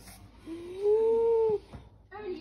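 Small dog giving one drawn-out whine lasting about a second, rising a little in pitch, then holding steady before it stops.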